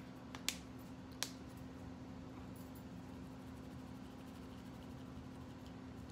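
Faint steady hum of a lawn mower running outside, heard from indoors, with a couple of light clicks from a plastic spice shaker being handled about half a second and a second in.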